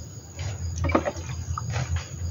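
Water poured from a plastic dipper splashing onto chili seedlings in their planting holes, in a few short splashes, over a steady low hum.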